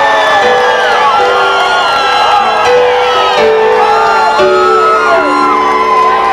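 A live rock band plays a slow instrumental intro: sustained keyboard chords that change every second or so, with gliding, arching high notes sliding over them.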